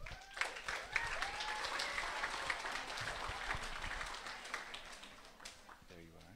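Audience applauding a graduate called to the stage, loudest at the start and dying away over the last couple of seconds, with a brief voice call from the crowd about a second in.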